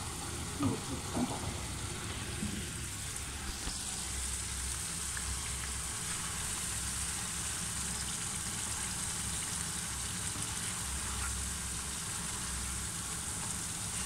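Rice in oily gravy sizzling steadily in a wide pan on a gas burner as it is stirred with a wooden spatula, with a few light scrapes of the spatula in the first couple of seconds.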